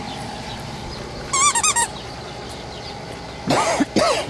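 A squeaky plush toy squeezed: a quick run of short warbling squeaks about a second and a half in, then a louder, longer squawk near the end.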